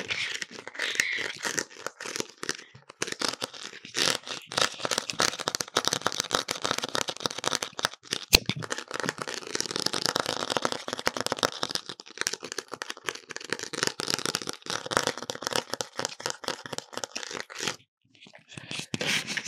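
Fingernails scratching, rubbing and tapping on an artificial pumpkin and a plastic skull mask held close to the microphone: a dense, crackly scratching with many quick clicks, and one sharp click a little past halfway.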